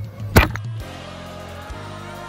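A single sharp knock about half a second in, as a hand reaches for the recording camera, then soft background music with held notes begins just under a second in.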